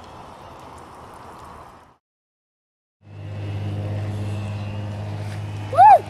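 An even rushing noise, then the sound cuts out completely for about a second; after it a steady low motor-like hum runs, and near the end a child gives a short, loud shout as he comes up out of the water.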